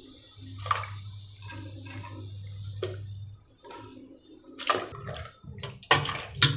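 Pieces of raw ash gourd dropped one after another into lime water in a steel pot, making several separate splashes.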